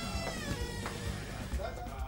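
Wooden door creaking on its hinges as it is pushed open: one creak with a wavering pitch lasting about a second, over soft background music.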